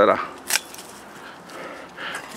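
A single sharp snip of hand pruning shears (secateurs) cutting through a thorny stem, about half a second in.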